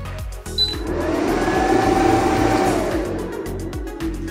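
A 2000 W pure sine wave inverter switching on: a short high beep about half a second in, then its cooling fan spinning up and winding back down over about three seconds.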